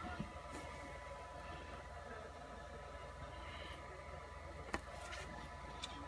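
Faint handling noise as a thin spring-steel build plate sheet is pulled off and lifted, over a steady low hum, with one sharp click about three-quarters of the way through.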